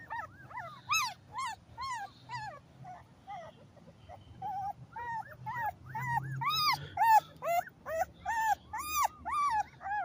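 A two-week-old pit bull puppy whimpering while being held: a string of short, high squeaks, each rising and falling in pitch, about two a second, fainter around the middle and stronger in the second half.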